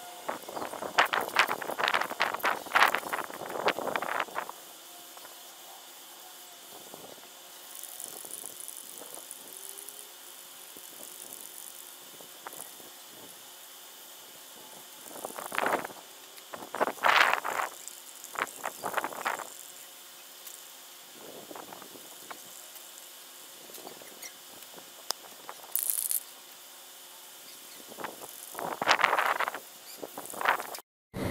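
Masking tape being pulled off the roll and pressed down with rustling newspaper, in three spells: the first four seconds, a longer one in the middle, and again near the end. This is newspaper being taped over a car hood to mask it for painting.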